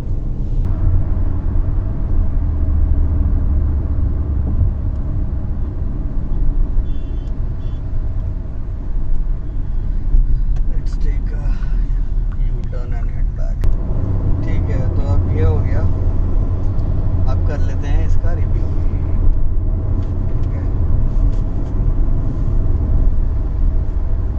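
Hyundai Alcazar SUV cruising on a highway, heard from inside the cabin: a steady low rumble of engine and road noise.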